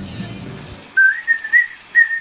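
A man whistling a short tune through pursed lips, starting about halfway in. It is a single clear note that steps up in pitch.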